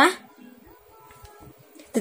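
A short spoken sound from a person's voice right at the start, then a low background with a few faint brief tones about a second in.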